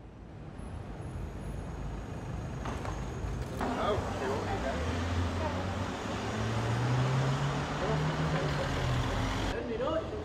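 City street traffic: a vehicle's engine rising steadily in pitch as it drives past, over a constant street hum, with people's voices. It cuts off abruptly near the end.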